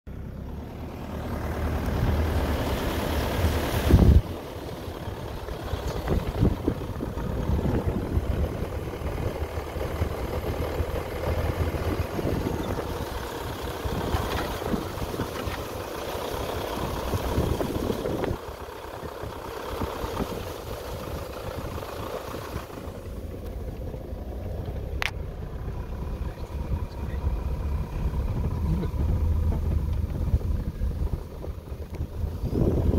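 Vehicle driving slowly along a rough dirt track, its engine running and body rumbling, with a loud thump about four seconds in.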